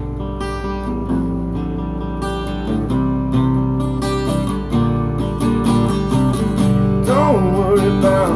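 Acoustic guitar strummed in a steady rhythm, chords changing every second or so. A sung vocal line comes in near the end.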